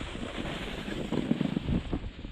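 Wind buffeting the camera's microphone while a snowboard slides over groomed snow, a steady rushing noise with an uneven low rumble.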